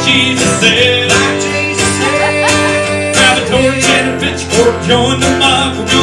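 Acoustic guitar and mandolin playing together in a country-bluegrass tune, performed live.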